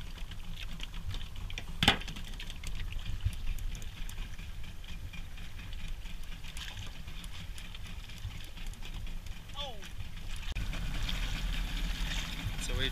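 Steady wash of wind and water around a small fishing boat, with one sharp knock about two seconds in and faint voices in the background.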